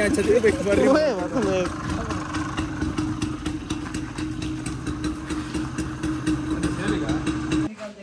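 A vehicle engine idling with a steady hum and low rumble, under a voice in the first second and a half; the sound cuts off abruptly near the end.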